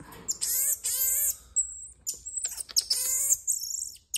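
A marmoset calling: two short bursts of high, quavering chirps, each followed by a thin, very high whistle. The last whistle falls slightly in pitch.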